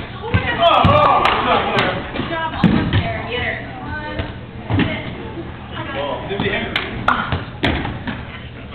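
Rubber dodgeballs hitting the floor and walls of an echoing hall: several sharp smacks scattered through, among indistinct shouting of players.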